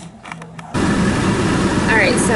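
Steady noise inside a car with its engine running, a low rumble and hiss that cuts in suddenly under a second in after a quiet stretch with a few faint clicks.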